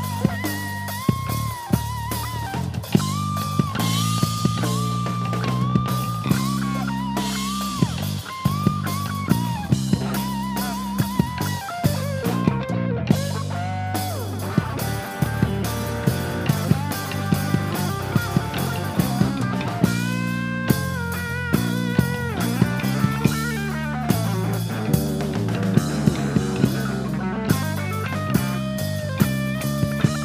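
Live band playing an instrumental passage: an electric guitar plays a lead line with wide vibrato and string bends over electric bass and a drum kit keeping a steady beat.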